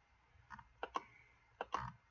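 About five faint clicks of a computer's keys or buttons, mostly in close pairs.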